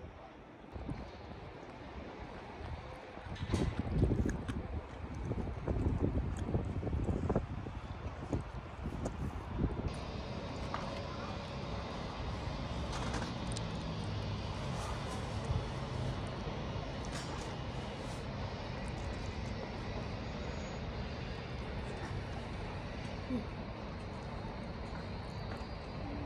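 Wind buffeting the microphone in low rumbling gusts for the first ten seconds or so, then a steadier rush of wind, with a person breathing close to the microphone.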